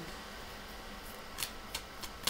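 Faint room tone with a few short, sharp clicks in the second half, as tarot cards are handled and drawn from the deck.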